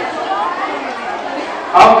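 Low, indistinct chatter of a seated audience of women in a hall, several voices overlapping. A man's voice comes back loudly near the end.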